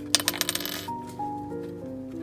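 A quick rattling clatter of small clicks, under a second long, from small stationery items handled and set down on a desk.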